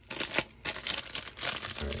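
Clear plastic wrapping crinkling and rustling as it is handled, in quick irregular crackles.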